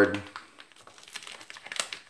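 Priority Mail mailer bag crinkling as it is handled, a patchy run of small crackles and clicks that gets busier near the end, with one sharper click.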